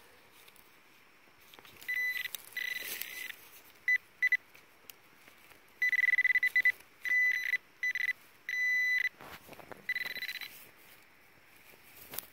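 Handheld metal-detecting pinpointer beeping as it is probed through loose dug soil, in short on-off bursts and a longer steady tone about six seconds in, signalling metal close to its tip: a buried coin.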